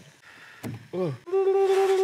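A man's voice: a short falling 'ooh', then one long 'oooh' held on a single steady pitch in apprehension, just before biting into waffled octopus tentacle. A faint click comes shortly before.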